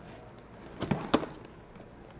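Plastic latches on a yellow Fluke hard carrying case being snapped open: two sharp clicks about a quarter-second apart, about a second in.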